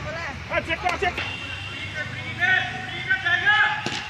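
Several voices of players and spectators calling and talking around a cricket ground, with one sharp crack near the end.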